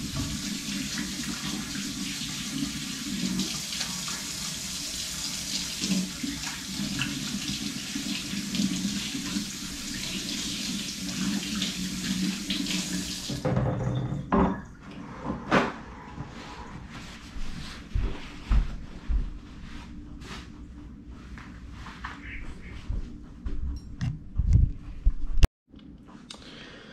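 Kitchen sink faucet running while hands are washed, a steady rush of water that is shut off abruptly about halfway through. After it come scattered knocks and clatters of things being handled at the counter.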